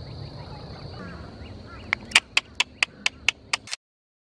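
White ibis giving a rapid series of about eight short calls, about four a second, starting about two seconds in, over faint chirping of small birds. The sound cuts off abruptly near the end.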